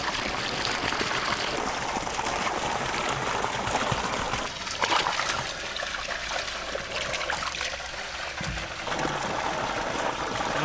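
Water trickling and splashing in large aluminium basins as goat brains are rinsed by hand, with a few brief sharper splashes.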